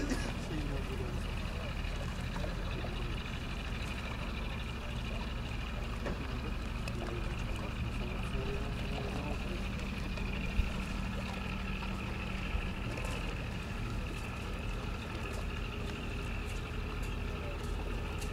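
A steady, low engine drone, with faint distant voices.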